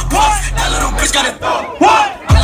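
Concert crowd shouting and yelling over loud hip-hop music with a steady bass line. Two loud rising-and-falling yells stand out, one just after the start and one near the end.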